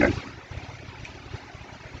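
Faint steady low hum with a soft hiss: background room noise.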